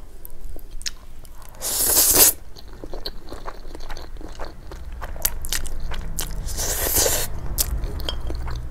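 Slurping fried instant noodles off chopsticks, two long slurps, the louder about two seconds in and another near seven seconds, with wet chewing and small clicks between them.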